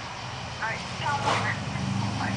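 Faint, indistinct voices in short snatches over a low, steady hum that comes in about half a second in.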